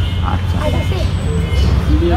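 Steady low rumble of road traffic, with soft talking over it.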